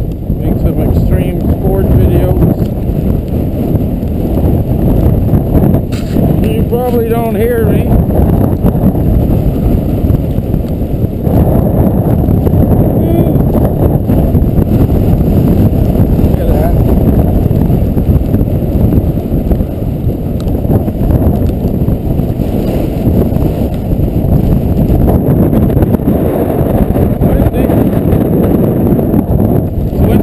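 Strong wind buffeting the microphone: a loud, continuous low rumble. A brief voice is heard about seven seconds in.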